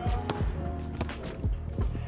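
A basketball dribbled hard on a hardwood gym floor, about five quick bounces at an uneven pace during a crossover move, over background music.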